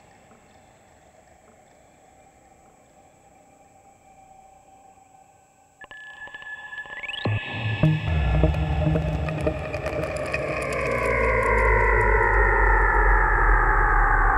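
Eurorack modular synthesizer music, its notes generated from a houseplant's biodata through an Instruo Scion module. The first six seconds are faint. Then a held tone and a quick rising sweep come in, followed by a loud entry with deep bass and a cluster of tones that glide slowly downward.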